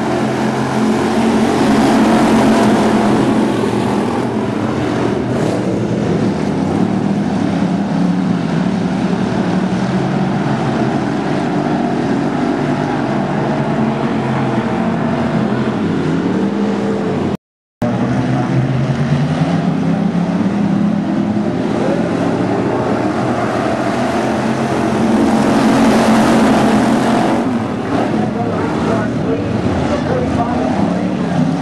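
A pack of dirt-track factory stock race cars running together, their engines swelling louder as the field passes close, once early and again about five seconds before the end. The sound cuts out completely for a split second about halfway through.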